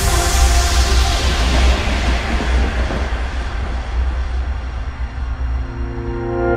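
Trance music breakdown: a swept noise wash that darkens steadily as its highs fall away, over a steady deep bass drone, with held synth chords growing clearer near the end.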